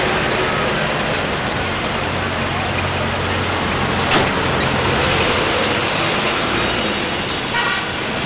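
A car engine idling with a steady low hum amid street traffic. A car door slams shut about halfway through, and a short car-horn toot sounds near the end.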